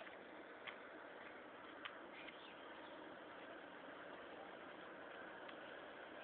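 Near silence: a faint steady hiss of outdoor ambience, with a few brief, faint high chirps in the first half.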